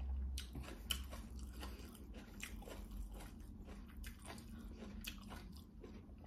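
Close-up eating by hand: chewing with wet mouth sounds and soft, irregular clicks of fingers mixing rice on a ceramic plate, with a sharper click about a second in.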